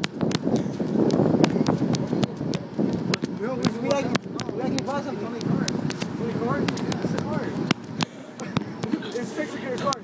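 Indistinct voices talking over the counter, mixed with many sharp clicks and knocks of handling noise on the microphone.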